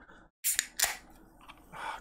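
Pull tab of an aluminium energy-drink can cracked open: two sharp cracks about a third of a second apart, with a faint fizz after.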